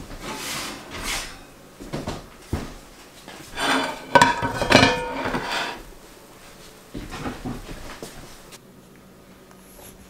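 Kitchenware clattering as a round pan of cornbread is turned out onto a ceramic plate. A few sharp knocks come first, then a louder ringing clatter of pan against plate about four seconds in, and lighter knocks later.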